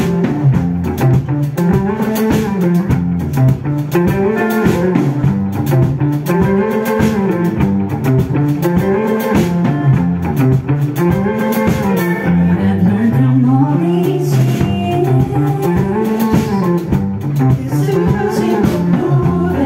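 A live band playing the instrumental opening of a song on electric guitars and bass, with a low melodic figure repeating about every two and a half seconds.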